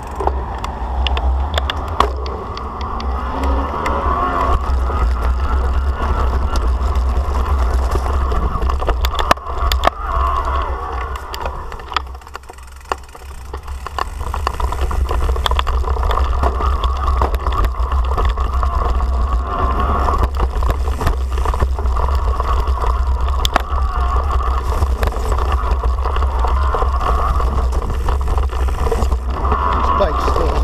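Riding noise from an electric mountain bike picked up by a handlebar camera: a heavy wind rumble on the microphone, knobby plus-size tyres rolling over concrete and grass, and the frame and cables rattling and clicking. It drops briefly quieter about halfway through.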